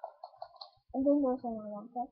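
A person's voice: a drawn-out, level-pitched murmur or hum lasting about a second, starting about a second in. It follows a few faint clicks.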